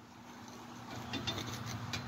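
A knife cutting into a fish on a wooden cutting board: a few faint ticks and scrapes from about a second in, over a low steady hum.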